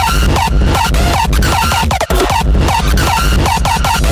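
Rawstyle hardstyle electronic dance music: a heavy, distorted kick drum on a fast, steady beat under a repeating synth line, with no vocals in this stretch.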